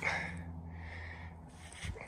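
A soft breath exhaled near the microphone, over a low steady hum, with a small click near the end.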